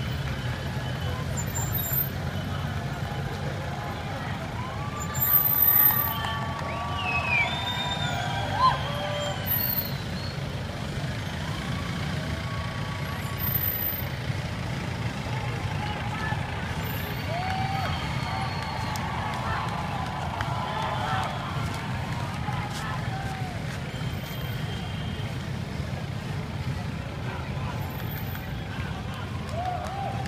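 A convoy of cars and SUVs driving past in a steady stream, with engine and tyre rumble throughout. Voices and shouts from onlookers sit over it, louder a couple of times.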